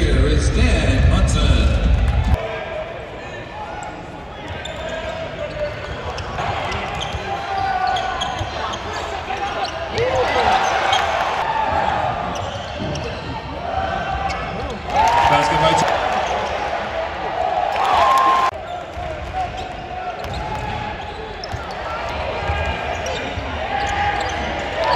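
A basketball bouncing on a hardwood court during play in a large, echoing arena, over voices from the crowd in the stands. Loud arena music cuts off about two seconds in.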